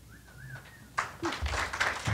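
Audience applauding, starting about a second in, after a short wavering high tone.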